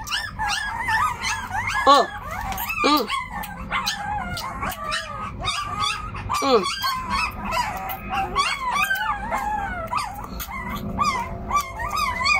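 Young puppies whining and squealing almost without pause: several high, wavering cries overlap one another.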